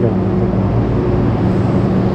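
Steady low hum of Hankyu electric trains standing at an underground platform, a continuous drone carrying a few steady tones.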